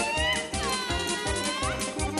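Lively Russian folk dance music with a fast, steady beat. Over it a high, voice-like gliding tone sounds twice: a short rise at the start, then a longer one that dips in pitch and climbs back up.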